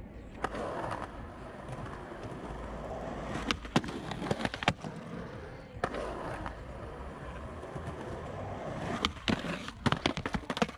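Skateboard wheels rolling on concrete, broken by a few sharp clacks of the board about three and a half to five seconds in. The rolling builds again and ends in a quick run of clacks as the tail snaps down to pop the board up onto the ledge.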